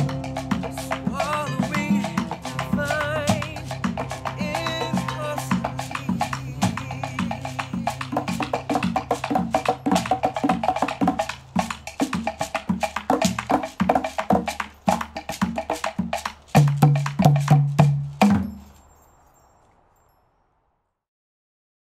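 Latin percussion ensemble with vibraphone, bass, trombone and saxophone playing the final bars of a song: a rapid clicking pattern on congas, shekere and the wooden catá drives it. It ends with four loud accented ensemble hits and a cut-off about eighteen seconds in, then rings out for about a second.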